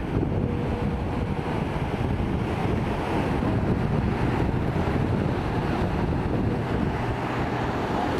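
Wind rumbling on the microphone over the steady wash of Baltic Sea surf breaking on a sandy beach.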